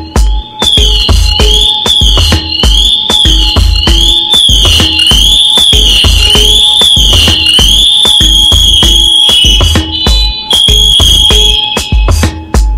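High-pitched electronic alarm warbling up and down slightly more than once a second, then holding one steady pitch for the last couple of seconds, over background music with a steady beat. It is plausibly the Scott NXG7's PASS motion alarm, set off by the wearer standing still.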